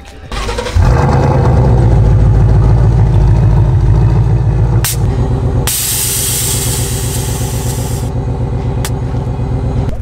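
Ford Mustang GT's Coyote V8 cranking briefly and catching under a second in, then running steadily at idle. About halfway through, a loud hiss sits over the engine for about two seconds.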